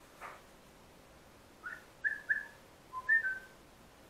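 Common kestrel calling: a string of about six short, high, whistly chirps in three quick clusters, after a brief soft rustle right at the start.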